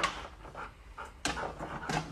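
A cattle dog panting with its mouth open, in short breathy puffs.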